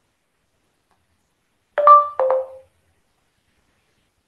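A two-note electronic chime about two seconds in, the second note lower than the first; otherwise near silence.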